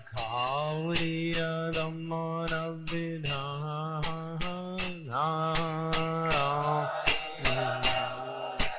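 A man singing a devotional chant in long held notes, accompanied by small brass hand cymbals (karatalas) struck in a steady rhythm, each strike ringing briefly.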